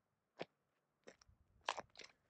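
Four faint, short crunching clicks spread over two seconds, the loudest a close pair near the end.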